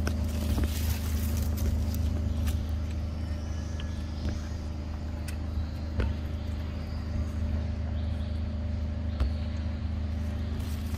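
A steady low motor-like hum, as of an engine running, with a few scattered sharp clicks over it.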